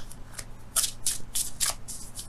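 A deck of tarot cards being shuffled in the hands: a quick run of short papery card strokes, about three a second.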